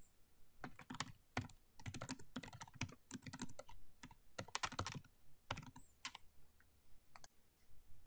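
Computer keyboard being typed on in quick, irregular keystrokes, stopping about seven seconds in.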